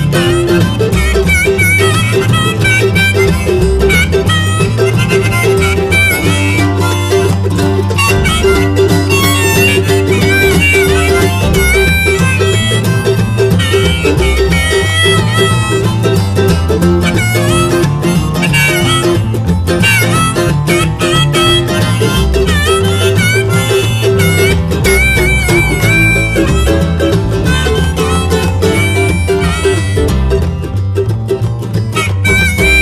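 Instrumental break by an acoustic string trio: acoustic guitar, mandolin and upright bass playing a blues-roots tune, with a steady bass line underneath and a wavering lead melody on top, no singing.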